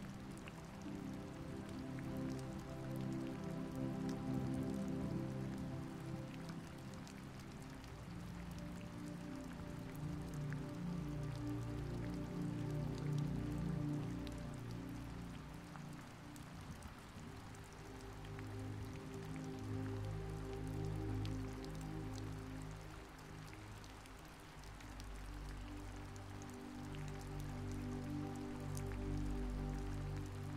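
Steady rain with a light patter of drops, over soft background music of slow, long-held low notes that swell and fade every several seconds.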